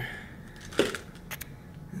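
Handling noise from a camera being moved and set in place: a sharp knock a little under a second in, then a few light clicks.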